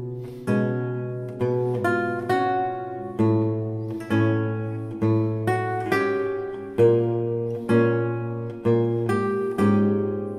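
Baroque lute playing a slow piece: plucked notes and chords about two a second, each ringing and fading, over low bass notes.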